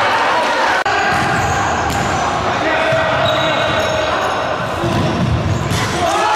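Indoor futsal play in a sports hall: the ball is kicked and bounces on the wooden court, with echoing shouts from players and spectators. An abrupt cut about a second in ends the crowd noise of a goal celebration.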